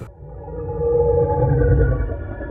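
Synthesized drone sting for a title-logo bumper: a deep rumble with a few long held tones, cutting in abruptly and swelling up over the first second.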